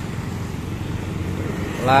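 Steady rain falling on a street, with motorcycle and car traffic running along the wet road.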